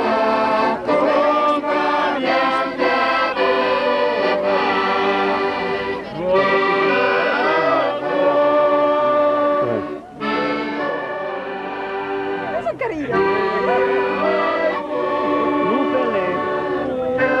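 Accordion playing sustained chords while a group of people sing along, with a brief break about ten seconds in.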